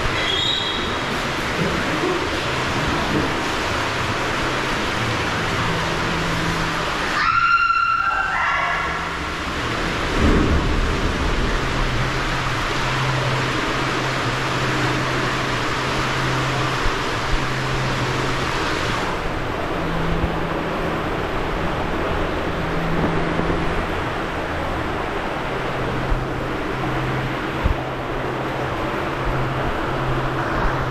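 Steady rushing of water running down into the start of an indoor tube water slide, with a low hum that comes and goes.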